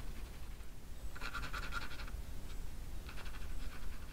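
Mechanical pencil scratching across textured watercolour paper in short, light sketching strokes. There are two bursts of scratching, about a second in and again near the end.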